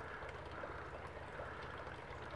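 Faint, steady background noise: an even hiss with a low rumble beneath it.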